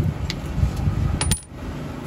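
Metal tools clinking: a deep socket being picked out of a pile of steel spanners and sockets, with two sharp clinks about a second in, over a low steady rumble.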